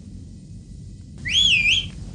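Low steady drone of an airliner cabin, and near the end a short whistle, under a second long, that swoops up in pitch and wavers before stopping.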